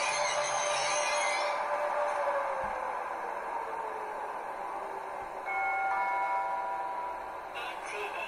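Digital ICE running sound from the model's ESU LokSound 5 decoder and twin speaker: a hiss with a slowly falling whine that fades as the train drives away. About five and a half seconds in, a multi-tone station-announcement gong rings for about two seconds.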